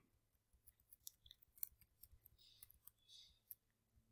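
Near silence with faint, irregular small clicks from a computer mouse as the page is scrolled.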